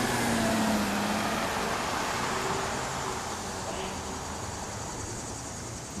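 A car passing on a street, its tyre and engine noise loudest about a second in and then slowly fading away.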